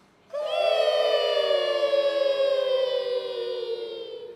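Children's choir singing one long held note in several voices, entering about a third of a second in, sagging slightly in pitch and fading near the end.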